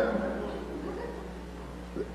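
A pause in a man's talk: faint room noise over a steady low hum.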